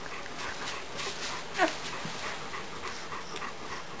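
Nine-day-old German shepherd puppies suckling at their mother, a run of many small wet clicks. One puppy gives a short squeak that falls in pitch about a second and a half in.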